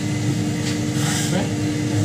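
Steady low drone of running kitchen equipment, with a constant hum.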